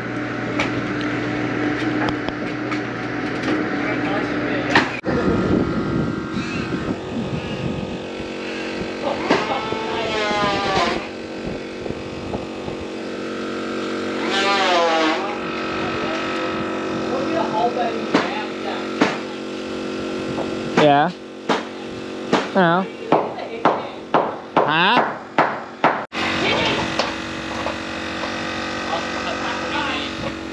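A person's voice in drawn-out calls with wavering pitch, heard several times over a steady background hum.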